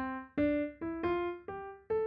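Piano-like software instrument played from a Novation Launchkey Mini MK4 MIDI keyboard, with the controller's scale mode set to C major: single notes climbing the scale step by step, about two notes a second, each struck and fading.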